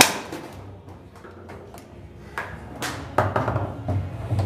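Knocks of play on a foosball table: one loud, hard knock right at the start, then a few lighter clicks and knocks in the last second and a half as the ball and the rod figures strike each other.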